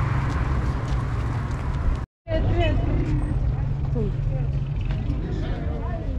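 Street ambience with a steady low traffic rumble, broken off by an abrupt cut about two seconds in; after it, faint voices over a lower background rumble.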